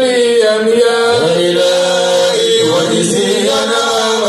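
A man chanting Islamic devotional poetry into a microphone, amplified over a PA, holding long, slightly wavering notes.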